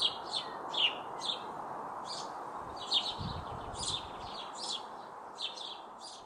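Small birds chirping repeatedly in short calls, several a second, over a steady background hiss. A brief low rumble comes about three seconds in.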